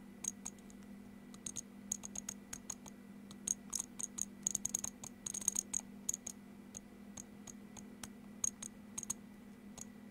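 Detent clicks of a CNC-style incremental rotary encoder handwheel being turned by hand: irregular runs of small sharp clicks, thickest in the middle, with a steady low hum underneath.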